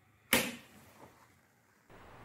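A single sharp knock from a wooden case being handled, dying away quickly, followed by a faint click about a second in.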